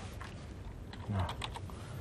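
Typing on a computer keyboard: a scattered, uneven run of key clicks.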